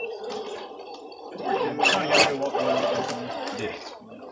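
Radio-controlled rock crawler's electric motor and geared drivetrain whining in uneven spurts as it is throttled up a rock face, with a couple of sharp scrapes or knocks about two seconds in.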